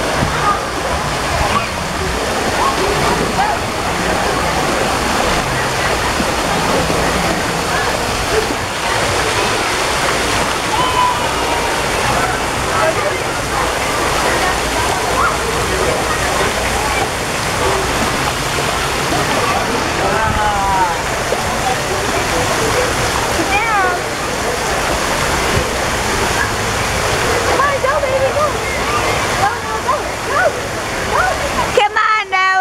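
Steady rushing of splashing, falling water from a water-park splash-pool fountain, with children's voices and a few high squeals in the background.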